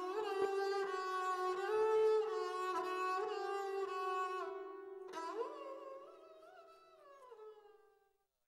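Sarangi, a bowed short-necked string instrument, playing long held notes with small gliding slides between pitches. It pauses about four and a half seconds in, then slides up into a final held note that bends down and fades away near the end.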